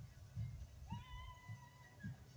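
Footsteps of the person walking with the camera, dull thumps about twice a second. About halfway through comes a single pitched call that rises and then holds steady for about a second.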